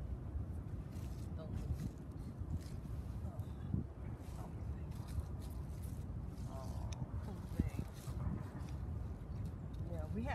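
Steady low rumble with scattered small clicks and rustles of spinach plants being dug out of soil with a hand trowel and dropped into a plastic basket.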